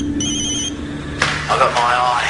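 Telephone ringing with a warbling electronic trill in a double ring: the second ring stops under a second in. A voice follows from about a second and a half in.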